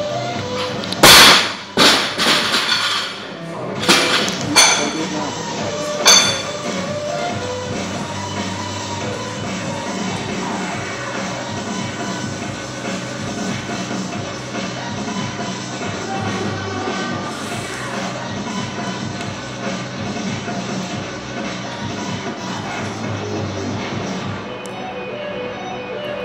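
Loaded barbell with bumper plates dropped from overhead onto the lifting platform about a second in: one loud thud, then several smaller bounces over the next five seconds. Background music plays throughout.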